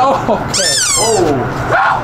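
A loud, high-pitched shriek lasting under a second that falls in pitch, about half a second in, amid voices.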